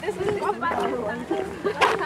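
Indistinct chatter of several voices talking at once, with one short sharp noise near the end.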